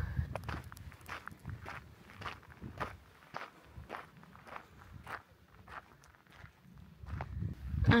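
Footsteps on a sandy gravel trail, a steady walking pace of about two steps a second.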